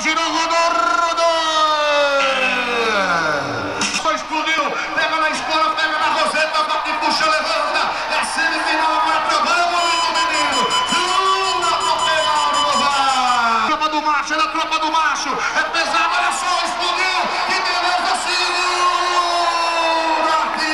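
Loud men's voices calling out in long, drawn-out shouts and whoops over continuous crowd noise in a rodeo arena, with no clear words.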